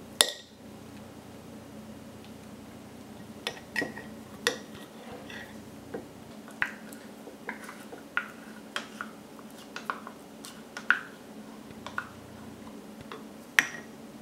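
A metal spoon clinking and scraping against a measuring cup and a glass mason jar while sticky sourdough starter is spooned out and poured. Irregular taps and clicks, with a sharp knock just after the start and another near the end.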